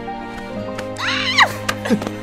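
A young woman's loud, high-pitched honking laugh, goose-like, about a second in: a squeal that rises and falls in pitch and then drops away, over soft background music.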